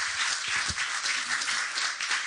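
Audience applauding steadily, with a couple of low bumps about half a second in.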